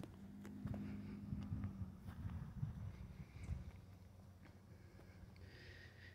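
Faint outdoor ambience while walking with a handheld phone: a low, uneven rumble of handling noise and soft footfalls, with a faint steady hum through the first two seconds.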